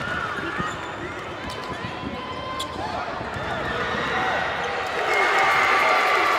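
Basketball being dribbled on a hardwood gym floor, its bounces mixed with the voices of players and spectators around the court.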